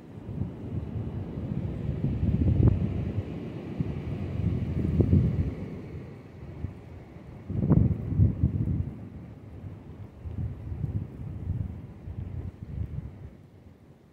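Wind buffeting the microphone in uneven gusts: a low rumble that swells and drops. The strongest gusts come about two and a half, five and eight seconds in, and it dies away near the end.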